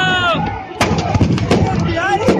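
Firecrackers packed in a burning effigy going off in a string of sharp bangs, several a second, starting just under a second in. A loud drawn-out voice sounds at the very start.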